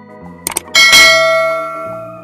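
Subscribe-animation sound effects over electronic organ music: a quick double click about half a second in, then a loud, bright bell ding that rings out and fades over about a second.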